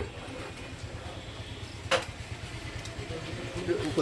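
A single sharp click about two seconds in: a carrom striker flicked across the wooden board and clacking against a piece. A low steady background hum runs under it.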